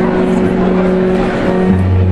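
Live amplified band music: electric guitar holding a steady, sustained droning chord, with a low bass note coming in near the end.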